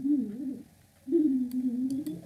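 A pigeon cooing: two low, wavering coos, the second one longer.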